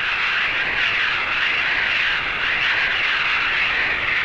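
Steady, loud rush of high-pressure air blasting from a full-scale test segment of the Avrocar's peripheral jet nozzle, a hissing roar that wavers slightly.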